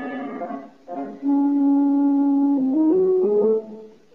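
Orchestral cartoon score with brass to the fore: after a soft passage and a brief gap, one long low note is held, then a short run of notes steps upward before fading out near the end.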